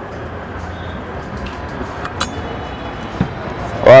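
Chilli-garlic sauce sizzling steadily in a steel pan on a gas burner, with one sharp click about two seconds in.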